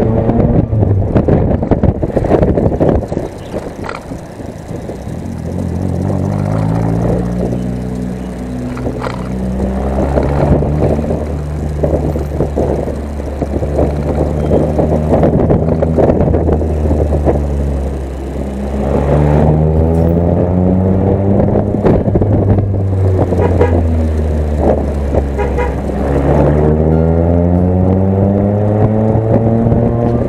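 A motor vehicle engine revving and accelerating loudly, its pitch climbing and dropping repeatedly as if shifting up through gears, with steeper rising sweeps about two-thirds of the way in and near the end.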